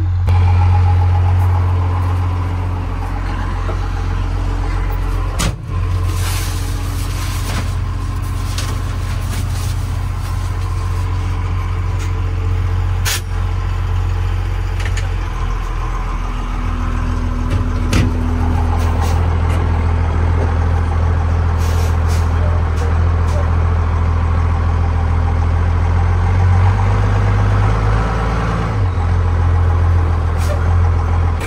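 12-valve Cummins inline-six diesel engine running with a steady low drone, its note shifting slightly a little past halfway and again near the end.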